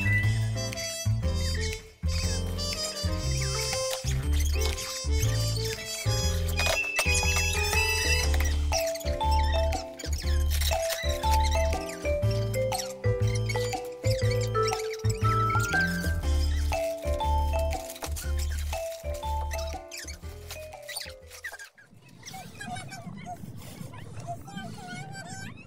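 Background music with a steady bass beat under a bright melody, stopping near the end.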